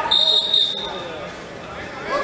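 A single high referee's whistle blast, just over a second long, fading out, with voices in the hall behind it.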